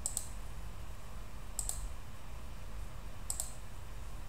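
Three short double clicks about a second and a half apart, each a computer mouse button pressed and released, over a low steady hum.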